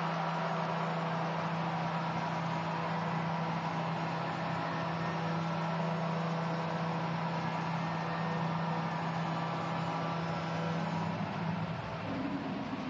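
Arena goal horn sounding one long, steady low note over crowd noise, signalling a goal just scored; it cuts off just before the end.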